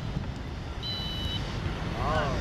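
Referee's whistle: one short, shrill blast about a second in, part of the series of blasts that ends the match. Wind noise on the microphone runs underneath.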